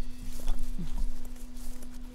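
Footsteps walking through grass, thudding about twice a second, over a steady low hum.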